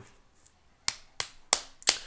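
Four short, sharp clicks, about a third of a second apart, in an otherwise quiet room. The last one is the loudest.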